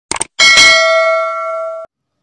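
Subscribe-button animation sound effect: a couple of quick mouse clicks, then a notification-bell ding that rings for about a second and a half and cuts off suddenly.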